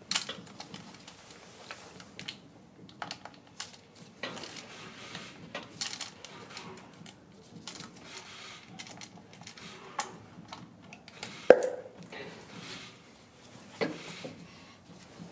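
Irregular light clicks and clatter of hand work among plastic connectors and engine parts, with one sharper knock about eleven and a half seconds in.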